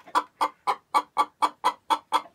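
Hen clucking in a steady run of short, evenly spaced clucks, about four a second.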